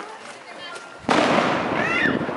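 A firework goes off about a second in: a sudden loud burst that carries on as a rushing hiss past the end, with a few short gliding whistles in it.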